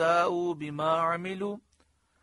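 A man chanting Quranic Arabic in a melodic recitation, holding long steady notes, stopping about one and a half seconds in.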